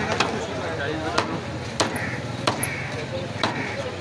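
Meat cleaver chopping chicken on a wooden chopping block: about five sharp chops, roughly one a second and unevenly spaced.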